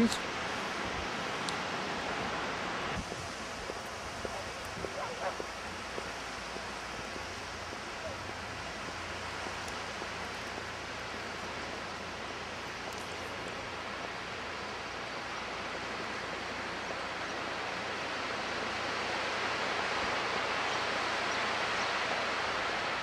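Steady wash of sea surf and wind at the shore, shifting abruptly about three seconds in and growing a little louder near the end.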